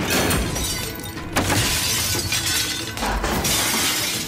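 Dramatic background score with crashing, shattering sound-effect hits, swelling suddenly about a second and a half in and again near the end.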